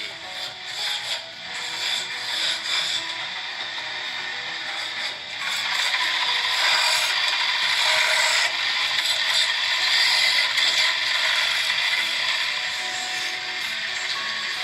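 Wood lathe turning a wooden spinning-top blank, the hand-held cutting tool shaving the spinning wood with a steady rasping hiss. It grows louder about halfway through as the cut deepens and eases a little near the end.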